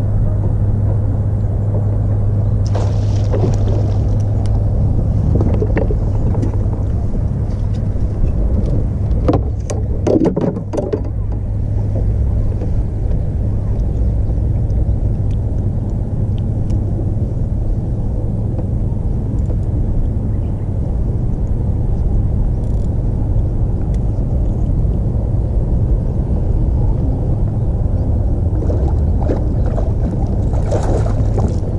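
Steady low rumble with a constant hum aboard a bass boat on open water, with a short cluster of sharper rattling and splashing noises about ten seconds in.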